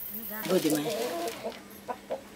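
A chicken clucking, a short run of calls starting about half a second in.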